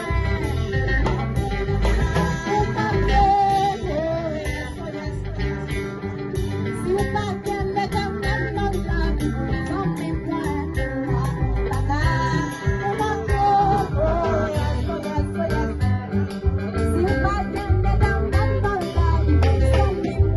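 Electric guitar played live through a PA, its melody line bending over a steady bass and band backing.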